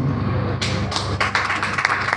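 An irregular run of sharp clicks and taps, several a second, starting about half a second in.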